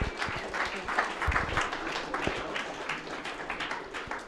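Seminar audience applauding, many hands clapping at once, dying down near the end.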